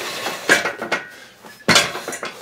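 Adjustable steel weight bench being handled and set for an incline: metal clanks and knocks of its frame and seat, one about half a second in and a louder one near the end.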